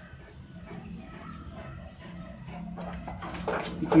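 A dog whining faintly, in thin wavering cries, while it is held still. Louder noises build up near the end.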